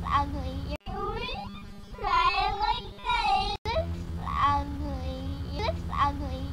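A girl's high-pitched wordless voice, long drawn-out wavering sounds that rise and fall in pitch, over a steady low hum. The sound cuts out briefly twice.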